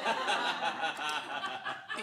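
Several people chuckling and snickering at once at a joke.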